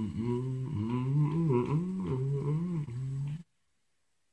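A man's low voice humming a tune. The pitch rises and falls in smooth arches, then stops abruptly about three and a half seconds in.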